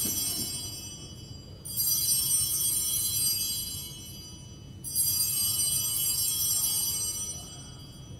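Altar bells rung at the elevation of the host during the consecration. A bright jingling ring fades, then two more rings start about three seconds apart, each dying away over two to three seconds in a reverberant church.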